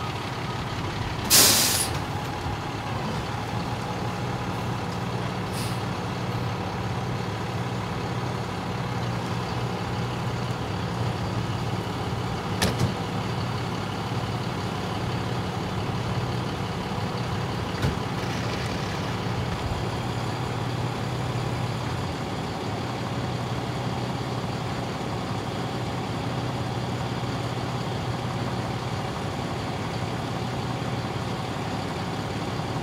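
Fire engine's diesel idling steadily, with a loud hiss of the air brakes being set about a second and a half in. A short sharp knock sounds about twelve seconds in.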